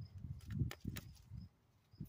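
Low rumble of wind and handling noise on the microphone outdoors, with a few sharp clicks and faint short bird chirps.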